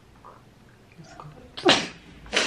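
A quiet room, then near the end one short, loud, breathy vocal burst from a person.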